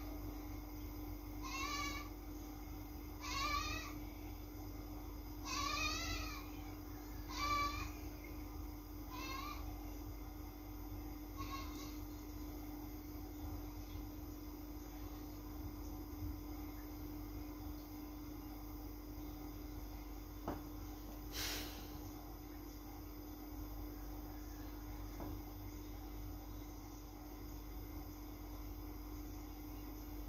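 An animal's cries, six short quavering calls in the first twelve seconds, the later ones fainter, over a steady low hum. A single sharp click comes about twenty-one seconds in.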